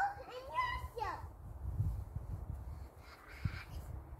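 A young child's high-pitched wordless squeals, rising and falling, in the first second, followed by quieter scuffing and a few soft low thumps.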